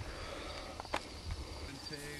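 Quiet outdoor background with a faint, steady high insect trill and a light click about a second in.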